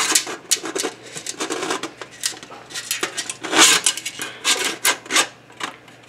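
Perforated metal steamer rack clinking and scraping against the inside of an aluminium tamale steamer pot as it is pressed and shifted into place at the bottom: a run of irregular metallic clicks and rattles, loudest a little past the middle.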